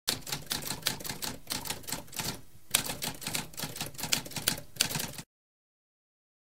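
Typewriter keys struck in a quick run of clicks, with a short pause about halfway and a harder strike as typing resumes; it stops about a second before the end.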